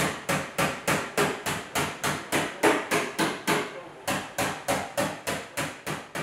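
A small hammer or tapping tool striking a car door's sheet-metal panel in a steady run of light, even taps, about three a second, each with a brief metallic ring.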